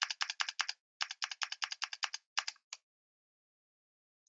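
Fast typing on a computer keyboard, keystrokes clicking at about ten a second. There is a short break about a second in, and the typing stops about three-quarters of the way through.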